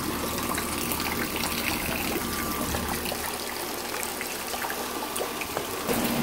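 Rainwater from a roof gutter pouring into a brim-full plastic trash can used as a rain barrel, splashing steadily onto the water's surface, with rain falling around it.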